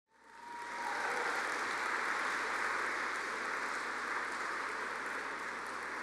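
Audience applause, a steady dense clatter of many hands clapping, fading in over the first second.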